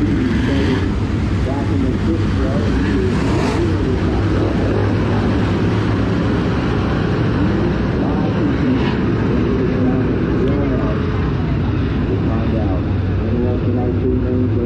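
A field of dirt-track modified race cars' V8 engines running at racing speed: a loud, continuous drone whose pitch rises and falls as the cars pass and get on and off the throttle.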